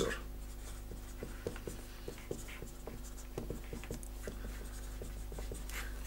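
Marker pen writing on paper: faint, irregular scratches and ticks as a line of working is written out, over a steady low hum.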